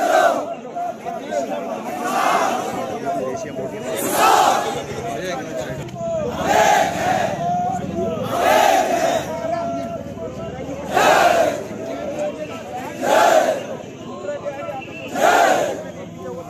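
A large crowd of protesters shouting a slogan together, a loud shout about every two seconds, with quieter voices between the shouts.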